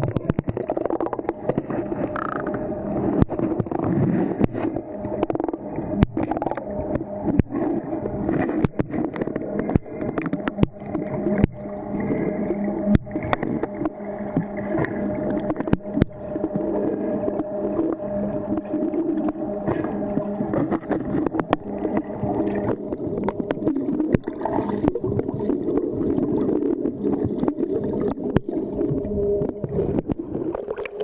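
Sound picked up by a camera held underwater: a dog paddling right beside it churns and bubbles the water, heard dull and muffled, with many irregular sharp clicks and a faint steady hum underneath.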